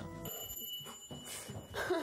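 Electronic doorbell ringing: one steady, high buzzing tone held for about a second and a half.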